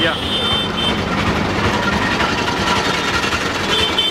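Street traffic noise: a steady din of vehicle engines, with a brief high tone near the start and again near the end.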